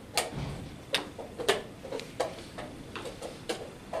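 Irregular sharp clicks and light knocks, about two a second, from chess pieces being set down and chess clock buttons being pressed at several boards in a playing hall.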